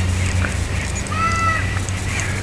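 A bird gives one short, arched call about a second in, over a steady low hum.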